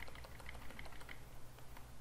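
Computer keyboard keys tapped in a quick, even run of light clicks, about five a second, as a cursor is stepped along a line of text. A faint steady low hum lies under the clicks.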